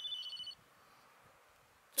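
Mobile phone notification tone: a short phrase of high electronic beeps stepping between a few pitches, which stops about half a second in.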